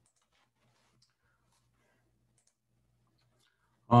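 Near silence with a few faint ticks, then a man's voice begins with a hesitant "uh" right at the end.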